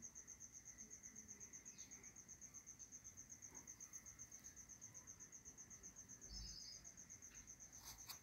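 Cricket chirping in a faint, steady, high-pitched trill of fast even pulses. A faint low bump comes about six seconds in.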